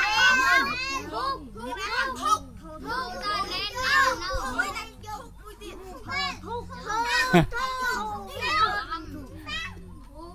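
A class of young kindergarten children talking and calling out over one another, many high voices overlapping.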